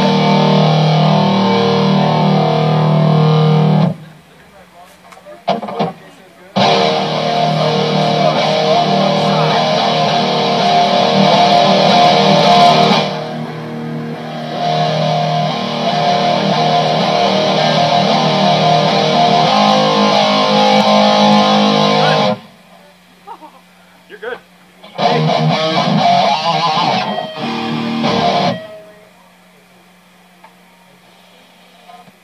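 Amplified electric guitars played with distortion in stop-start sound-check stretches. The playing breaks off about four seconds in, resumes a couple of seconds later and runs until past twenty seconds, then comes in a few short bursts near the end. A steady low hum is left in the pauses.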